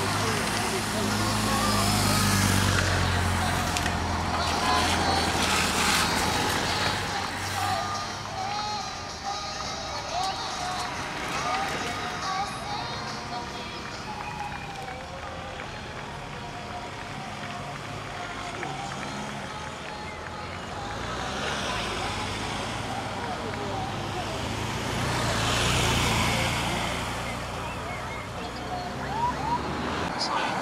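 Support cars and police escort motorcycles of a cycle-race convoy driving past one after another, their engine and tyre noise swelling and fading. The passing is loudest in the first few seconds and swells again about three-quarters of the way through.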